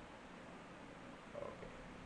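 Quiet room tone during a pause in speech, with one faint, brief murmur from the speaker's voice about one and a half seconds in.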